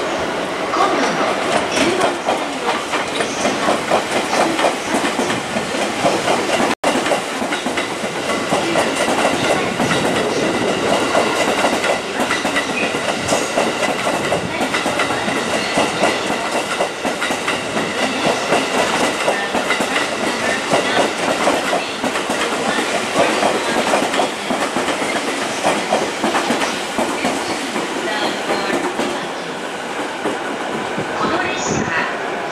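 A JR East 215 series double-decker electric train rolling past, its wheels clattering steadily over rail joints and pointwork, with a steady high ringing tone above the clatter.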